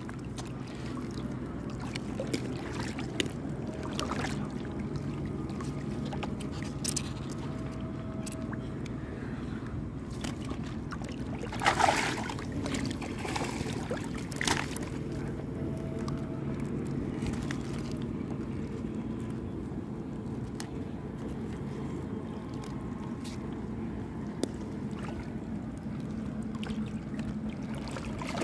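Water sloshing and trickling around a small fishing boat while a wet fishing net is handled, with scattered light knocks and rustles. A low steady hum runs beneath and stops about two-thirds of the way through, and a louder brief noise comes about halfway.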